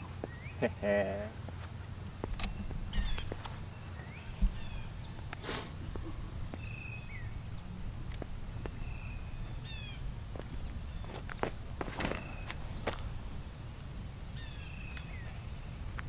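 Small birds repeating high, thin chirps over and over against a low steady outdoor rumble, with a few sharp taps scattered through.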